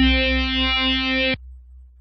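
A held note from a MIDI-sequenced software instrument closes a run of shorter arpeggio notes. It is steady in pitch with many overtones and cuts off suddenly about 1.4 s in. A low rumble fades out after it.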